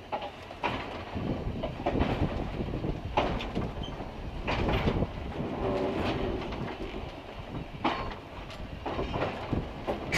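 Electric railway car rolling slowly on jointed track, heard from inside the car: a steady rumble with irregular clacks and knocks as the wheels cross rail joints and switches.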